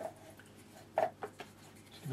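Mostly quiet room with two brief soft knocks or scrapes about a second apart, from paintbrushes being handled while the painter changes from the flat brush to the hake.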